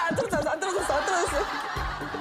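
Women laughing and shrieking excitedly over background music.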